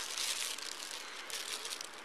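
Thin plastic bag crinkling irregularly as it is handled, over a steady hiss from the body-camera microphone.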